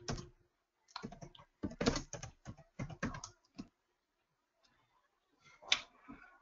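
Typing on a computer keyboard: runs of key clicks for the first three and a half seconds, then a pause and one sharper click near the end.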